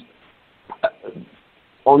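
A man's speech that breaks off into a pause: a short hesitant 'uh' and a small click about a second in, then talk picks up again at the very end.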